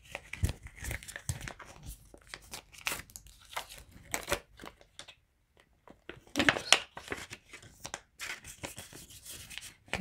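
Crinkling and rustling of Canadian polymer banknotes and a cash envelope being handled as bills are folded and slid into the envelope. The sound comes in irregular small crackles, with a short quiet gap about five seconds in and a louder flurry just after.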